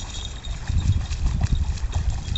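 A German shepherd–border collie mix's paws splashing in a quick rhythm as it runs through shallow lake water, over a low rumble.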